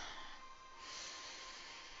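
A person's breathing, heard as a soft, airy exhale that grows audible about a second in, with faint background music beneath.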